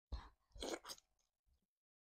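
Close-miked chewing of a mouthful of catfish: a few crunchy, wet chews within the first second and a faint one at about a second and a half.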